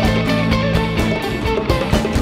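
Live rock band playing an instrumental passage, recorded straight from the soundboard: electric guitar lines over held bass notes and a steady drum beat.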